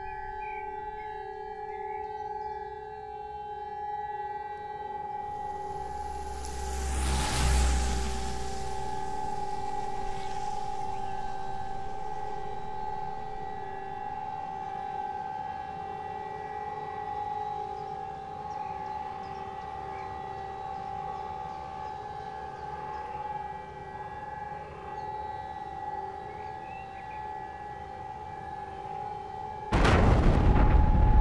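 War sound effects: a steady siren-like drone of two held tones. A deep rumbling boom swells and fades about seven seconds in, and a sudden loud blast breaks in near the end.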